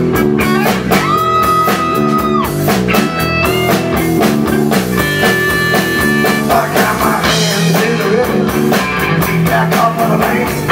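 Live rock band playing an instrumental stretch with no singing: an electric lead guitar holds long, sustained notes that slide up into pitch, over electric bass and a drum kit beat.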